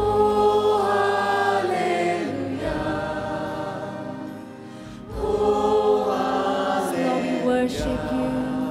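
A large congregation singing a worship chorus together with music, in two long sung phrases, the second starting about five seconds in.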